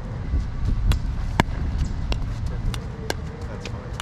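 A plastic pickleball being hit with paddles and bouncing on the hard court: several sharp, hollow pops spaced irregularly, the loudest about a second and a half in.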